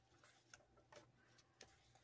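Near silence: room tone with a few faint ticks about half a second apart, from paper dollar bills being handled.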